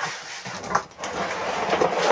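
Plastic wrapping crinkling and a cardboard box rustling as a plastic-bagged coiled cord is pulled out of the box, a continuous crackly rustle that grows stronger in the second half.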